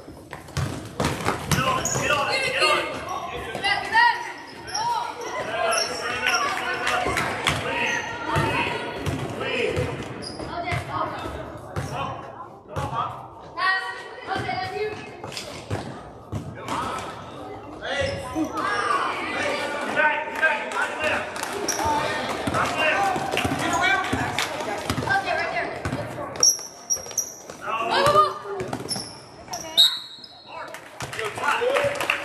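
Basketball bouncing on a gym court during play, a series of short thuds, over many indistinct voices of players and spectators echoing in a large gym.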